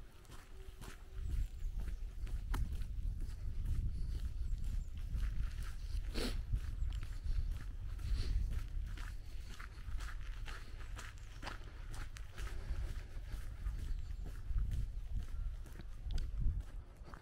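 Footsteps of a person walking on a wet asphalt lane, with wind rumbling on the microphone throughout and scattered short sharp clicks.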